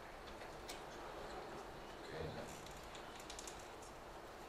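Faint, quick clicks of laptop keys, a bunch of them about two and a half to three and a half seconds in, over steady room tone.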